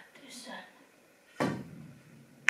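A single sharp knock about one and a half seconds in: a pool cue's tip striking the cue ball.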